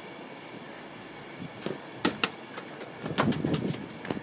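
Footsteps on a grass lawn and knocks from the handheld camera being moved, with a few scattered taps around the middle and a louder cluster of steps and rustling about three seconds in, over a faint steady hiss.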